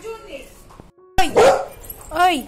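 A golden retriever barks once, a single loud, short bark a little over a second in, after a quiet moment.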